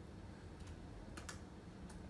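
Faint typing on a MacBook Pro laptop keyboard: a few scattered keystrokes as a terminal command is entered.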